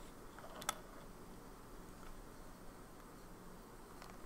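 Quiet room tone with a faint low hum, broken by one short sharp click about two-thirds of a second in.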